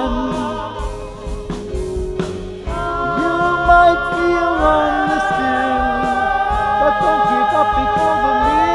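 A sung musical number with live band accompaniment, the voices swelling into long held notes with vibrato about three seconds in.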